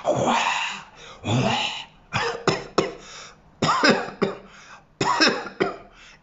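A man blowing out two long, forceful breaths, then coughing and clearing his throat in a run of short bursts.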